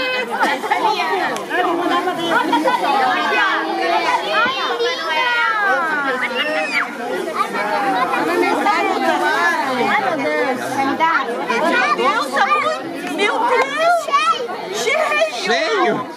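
A group of adults and young children talking over one another: steady, overlapping chatter with no single voice standing out.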